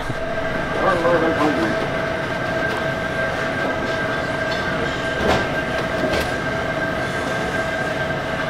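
Steady electrical hum of store equipment, two high, even tones over a constant background noise, with a faint voice briefly about a second in.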